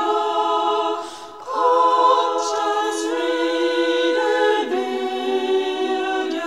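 Women's choir singing a cappella in several parts, holding long notes that shift in pitch, with a short breath pause about a second in.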